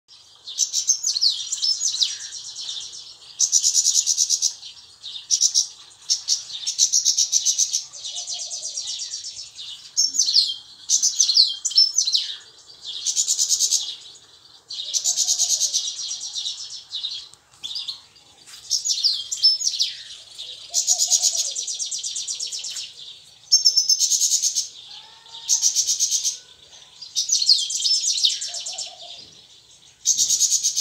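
European goldfinch singing in a cage: rapid, twittering phrases, each a second or two long, repeated with short pauses between them.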